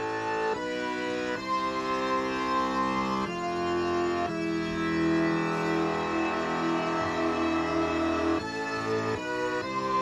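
Arturia MicroFreak synthesizer playing a slow run of held chords with an orchestral sound. It comes from its Karplus-Strong oscillator in unison mode with spread turned all the way up. The chord changes about half a dozen times, each held for one to four seconds.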